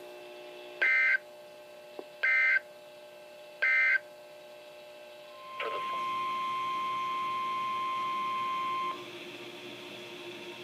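NOAA Weather Radio broadcast through a weather alert radio: three short screeching digital SAME data bursts about 1.4 s apart, the end-of-message code closing the previous alert. After a short pause, a steady alert tone sounds for about three seconds, signalling the next alert, a flash flood watch.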